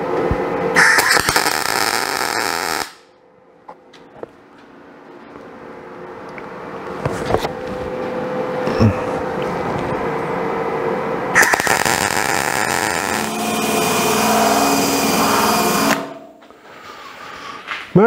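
MIG welder burning plug welds through drilled holes in steel flat bar, with a hissing crackle of the arc in two main bursts of about two to four seconds each. A quieter sound slowly grows louder between the bursts.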